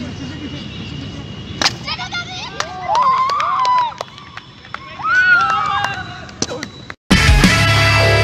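A water rocket leaves its launcher with one sharp pop, followed by spectators shouting and cheering in long rising-and-falling whoops. Music cuts in near the end.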